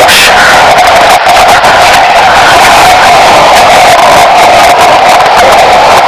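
A boy's long, held scream, boosted and clipped into harsh distortion and static.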